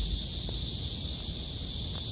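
A steady high hiss of outdoor ambience over a low rumble, with a faint click about half a second in.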